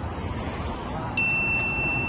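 A single bright electronic ding, a notification-bell chime, strikes a little past halfway and rings on as a held high tone, over a low background of street noise.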